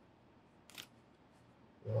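A single short, crisp click about three-quarters of a second in, over faint room background; a man starts speaking near the end.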